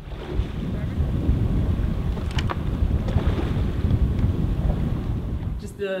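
Wind buffeting the microphone over open water, a steady low rumble, with a faint tick a little over two seconds in.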